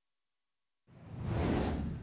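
Silence for about the first second, then a rising whoosh sound effect that swells and eases off slightly, the transition effect of an animated title card.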